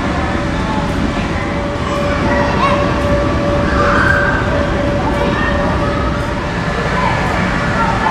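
Loud, steady background din with a constant hum and indistinct voices in the distance.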